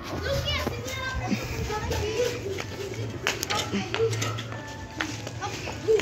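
Distant children's voices and calls, with background music and a low steady hum underneath.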